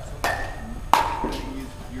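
Metal baseball bat striking a ball with a sharp ringing ping just under a second in, the loudest sound here, with a fainter ringing ping shortly before it.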